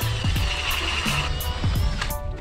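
Background music with a steady beat, mixed over a 7.5-inch K-Drill ice auger driven by a Milwaukee M18 Fuel cordless drill boring through lake ice: a steady motor whine with the grinding hiss of ice cuttings, easing off just past halfway.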